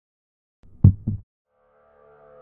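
A heartbeat sound effect: one low double thump (lub-dub) a little under a second in, against dead silence.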